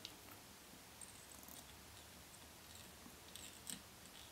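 Near silence: room tone with a few faint clicks, one about a second in and two near the end.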